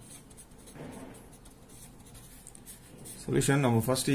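Ballpoint pen writing on a sheet of paper: faint scratching strokes as a word is written and underlined. A man's voice starts speaking near the end.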